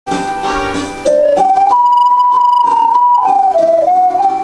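Two ocarinas playing a slow hymn melody in clear, pure tones. A few notes step upward to a long high note held for about a second and a half, then the line falls again, with lower sustained notes sounding beneath.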